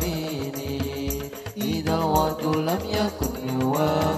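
Group of male voices singing an Arabic devotional song (sholawat) together, the melody sliding between long held notes, with frame drums (rebana) beating a low rhythm underneath.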